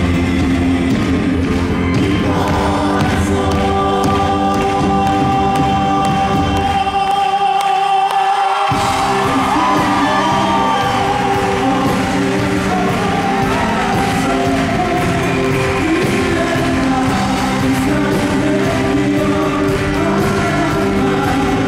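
Live folk-pop band playing with lead vocals over acoustic guitar, bass, drums and keyboard. About seven seconds in, the bass and drums drop out briefly, then the full band comes back in.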